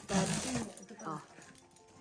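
Cardboard box being opened: a short, noisy tearing rustle of tape and cardboard flaps in the first half-second or so.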